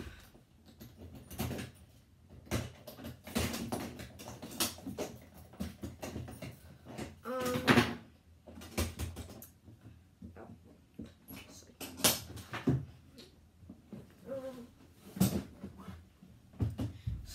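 Scattered knocks, clicks and clatters of a footlocker being opened and rummaged through, with a short pitched whine a little before the halfway point.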